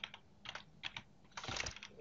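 Computer keyboard keys pressed, a few single faint clicks followed by a quicker run of keystrokes near the end, entering an editor shortcut that comments out the selected line.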